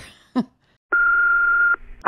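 A single steady electronic beep of under a second, heard over a telephone line with its hiss: the tone that starts a recorded voicemail message.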